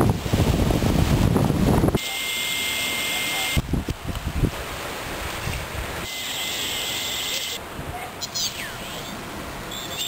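Wind buffeting the microphone for the first two seconds. It then cuts to a steady hiss with a faint high whistle: the homebrew direct conversion receiver's speaker putting out empty-band noise. Near the end come a few brief warbling chirps.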